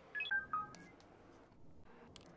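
A quick run of short electronic beeps, mostly stepping down in pitch, within the first second, then faint room tone.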